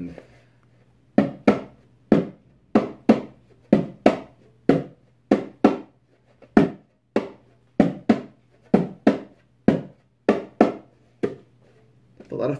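Rock Jam bongos struck by hand in a slow, steady pattern of single and paired hits, about two a second. The playing starts about a second in and stops near the end.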